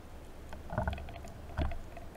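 Underwater sound through a diving camera's housing: a scattered crackle of faint clicks, with two dull thumps a little under a second apart, about a second and a half in.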